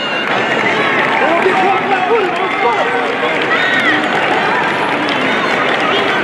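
Arena crowd cheering and shouting, many voices overlapping at a steady, loud level.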